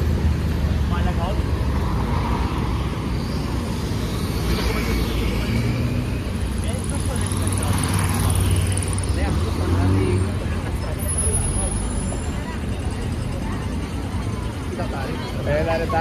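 City street traffic at a crossing: a steady low rumble of car engines, with a motorcycle passing close by about halfway through. Voices of passers-by are heard near the end.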